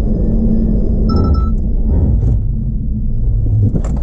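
Loud, low in-cabin rumble of the 2019 BMW Z4 test car driving at about 50 km/h, with a short high tone about a second in. The lowest part of the rumble fades near the end as the car brakes to a stop behind a target car under automatic emergency braking.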